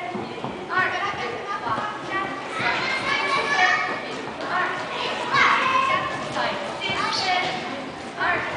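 Young girls' voices chattering and calling out over one another, echoing in a large gym hall.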